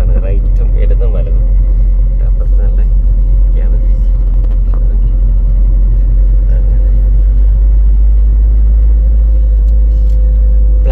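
Steady low rumble of a moving car travelling along a road, with a faint steady hum above it. Some indistinct talking at the start.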